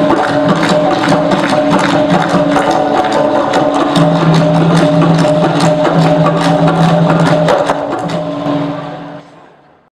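Dikir barat music: a women's chorus with fast, regular hand clapping and percussion over sustained sung tones, fading out over the last second or so.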